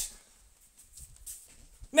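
A pause in a person's shouted ranting: a shout cuts off just after the start, then near silence with a few faint low thumps, and a loud shouted word begins right at the end.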